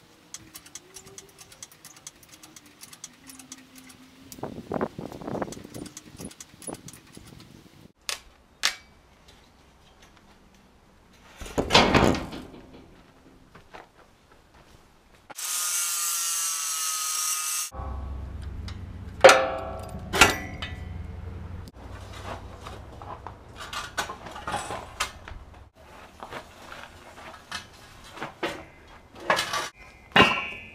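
An angle grinder with a metal cutting wheel cuts steel for about two seconds past the middle, then stops suddenly. Scattered knocks and clatter come before and after it.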